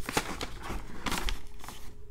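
Folded sheet of lined notebook paper rustling and crinkling as it is unfolded by hand, a run of quick crackles that tails off near the end.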